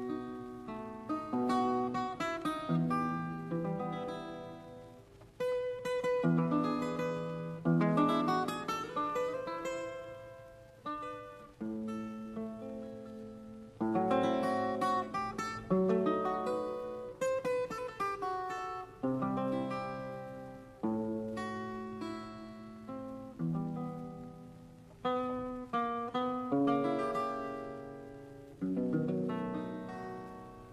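Solo Russian seven-string guitar played fingerstyle: a slow old-romance melody in plucked single notes and arpeggiated chords, each phrase struck and left ringing until it fades.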